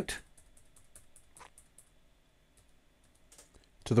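Computer keyboard keys tapped repeatedly: a quick run of about ten light clicks in the first two seconds, then a few more near the end. These are Ctrl and minus pressed over and over to zoom out.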